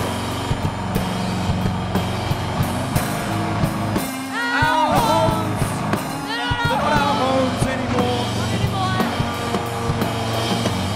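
Live rock band playing an instrumental passage: a steady drum-kit beat under sustained bass-guitar notes and electric guitar. Two phrases of sliding, wavering notes come in about halfway through.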